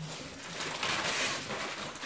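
Gift wrapping paper rustling as a wrapped box is handled and unwrapped. A low steady hum fades out about half a second in.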